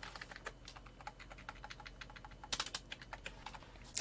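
Faint clicking of a computer keyboard and mouse as a sentence is selected, cut and pasted in a word-processor document. The clicks come in a run, busiest about half a second in and again about two and a half seconds in.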